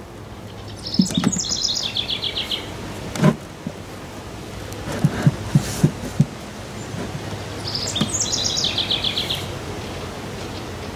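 A songbird singing twice, about seven seconds apart, each song a quick run of notes falling in pitch. Between the songs come a knock a little after three seconds and a run of sharp taps around five to six seconds in, from beehive boxes and frames being handled.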